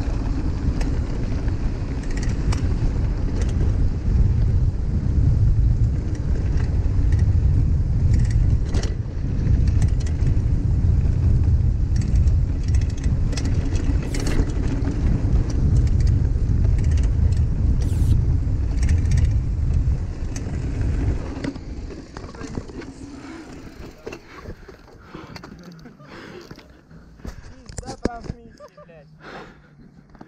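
Heavy wind buffeting on the camera microphone, with tyre rumble and scattered knocks from a hardtail mountain bike descending a dirt trail at speed, near 57 km/h. About two-thirds of the way through the rumble fades as the bike slows, leaving lighter rattles and clicks.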